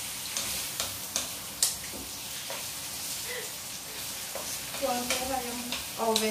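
Food sizzling as it fries in a black frying pan on a gas stove, stirred with a wooden spatula that knocks against the pan several times in the first few seconds, the sharpest knock about a second and a half in.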